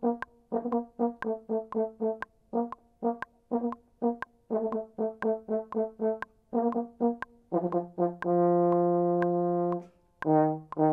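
Solo French horn playing short, detached off-beat notes at march tempo, then a long held note near the end. Steady faint clicks about twice a second keep time underneath.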